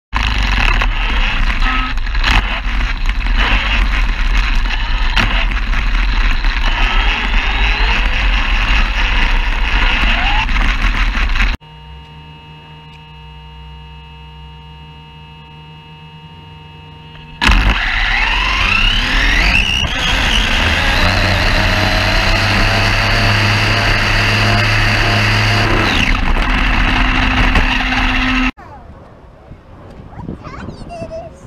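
Onboard audio from an ARRMA 1717 Typhon RC drag car with a Castle brushless power system on 4S LiPo. A long stretch of loud rushing and rumbling noise gives way to a quieter part with several steady whining tones. Then loud noise returns suddenly, and a whine climbs in pitch as the car launches and runs, followed by steady loud rushing for several seconds until an abrupt cut.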